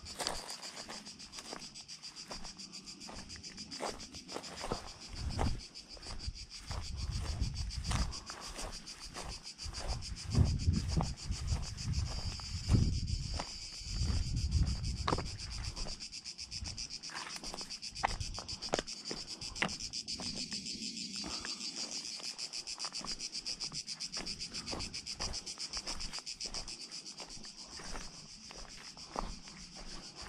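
A steady, shrill chorus of insects chirring high, with footsteps crunching on dry grass and loose stones as short clicks throughout. Louder low rumbling comes and goes in the middle.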